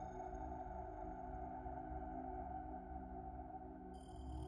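Quiet ambient background music: a low steady drone with long held tones.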